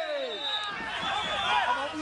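A male football spectator's drawn-out shout of encouragement, falling in pitch and fading out about a second in, followed by quieter voices from other fans.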